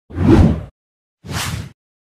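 Two whoosh sound effects from an animated title intro, each about half a second long, the first louder than the second.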